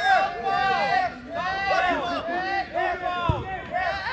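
Players shouting and calling to each other during play on an artificial-turf soccer pitch, with one short thump about three seconds in.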